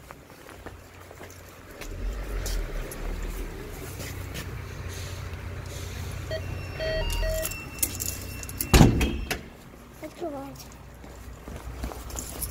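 An apartment entrance intercom's key reader giving a few short electronic beeps as a universal key fob is held to it, about six to seven seconds in, then a loud single clunk near nine seconds as the door opens. Low rumble from handling throughout.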